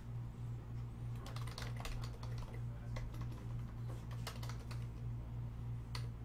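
Typing on a computer keyboard: a run of quick key clicks, thickest in the middle seconds, over a steady low hum.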